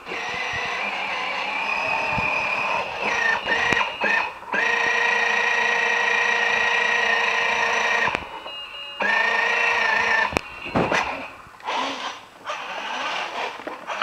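Electronic sounds from a children's battery-powered ride-on toy quad bike, set off by its handlebar sound button: steady electronic tones held for several seconds at a time, with short breaks. There are a couple of sharp clicks about two-thirds of the way through.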